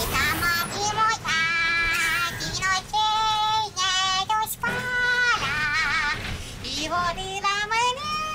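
A man singing without accompaniment in a high voice: long held notes with a wavering vibrato, broken by short pauses, and a rising glide near the end.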